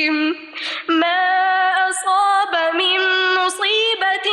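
A woman reciting the Quran in Arabic in a melodic chanted style, holding long drawn-out notes, with a quick breath taken about half a second in.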